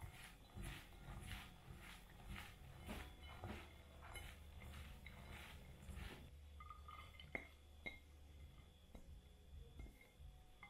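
Faint wet rustling of hands tossing chopped eggplant, onion and peppers coated in olive oil and spices on a glass plate, about two soft strokes a second for the first six seconds, then a couple of light clicks.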